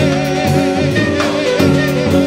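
Live jazz quintet playing: a man singing held, wavering notes with saxophone, over upright bass, keyboard and a drum kit with cymbals.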